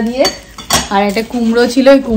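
Kitchenware clattering on a countertop: one sharp knock just under a second in, amid a woman's talking.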